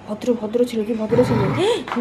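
Yellow Labrador vocalizing while being petted: drawn-out, howl-like sounds, with a rougher low growl about a second in and a rise and fall in pitch near the end.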